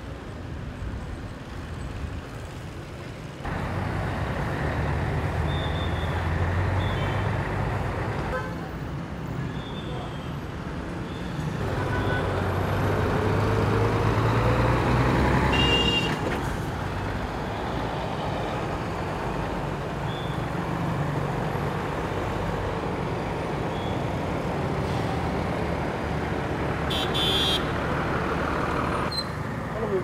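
Street traffic: truck and motorbike engines running, with short horn toots. The mix changes abruptly several times.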